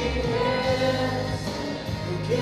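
Two women singing a worship song into microphones over a steady instrumental accompaniment, holding long sung notes.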